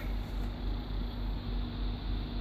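Steady low rumble and hiss of background noise with a faint steady hum, and no distinct event.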